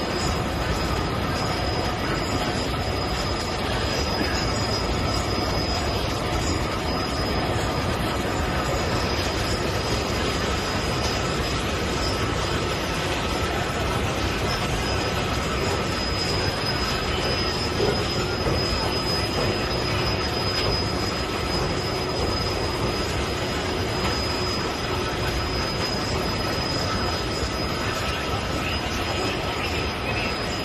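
ThyssenKrupp Barracuda bucket wheel excavator at work, its bucket wheel turning and digging into an earth bank: a steady, loud machine noise with a constant high-pitched squeal over it.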